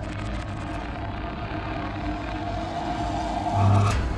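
Ominous horror-film sound design: a dark, continuous low rumble with a held tone above it, swelling to a loud low boom near the end.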